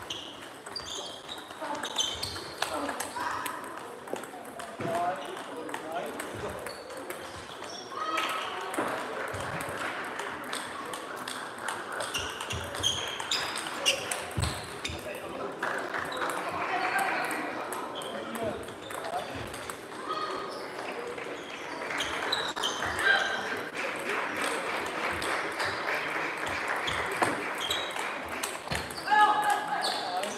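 Table tennis ball clicking off rackets and the table in rallies, with many more ball clicks from neighbouring tables and a murmur of indistinct voices in a large sports hall.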